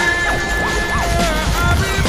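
Experimental electronic music: a held high synth tone that steps down about one and a half seconds in, with short arching pitch glides, over a dense noisy texture and a steady low rumble.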